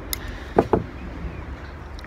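Scissors cutting into hard wet-felted wool wrapped over a wooden egg: a sharp click near the start, then a couple of short snips about half a second in, over a low steady background rumble.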